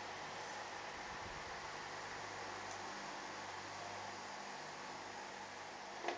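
Steady background hiss with a faint low hum: room tone with no distinct sound event.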